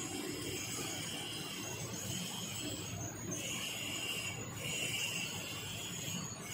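Electric high-pressure hot-water jet machine spraying steadily into a stainless steel tank, a continuous hiss of water.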